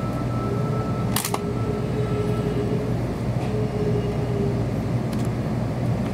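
Cabin noise inside a Kyushu Shinkansen carriage as the train rolls slowly along the platform to a stop: a steady low hum with a faint whine that comes and goes, and one sharp click a little over a second in.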